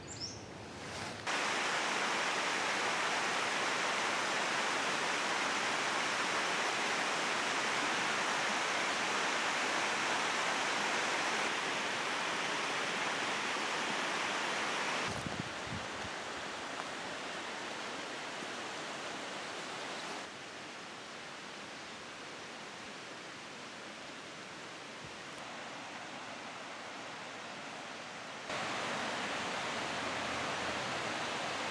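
Steady rushing noise of running water, an even hiss with no distinct calls or tones. It comes up sharply about a second in, steps down in level around the middle and again at about two-thirds through, and rises again near the end.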